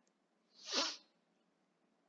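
A single short, breathy exhale from the presenter, lasting about half a second near the middle, ending in a brief falling voiced tail.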